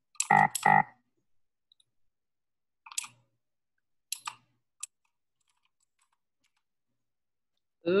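A short two-beat laugh, the loudest sound, then a few sharp computer keyboard keystrokes scattered between about three and five seconds in as a command is typed.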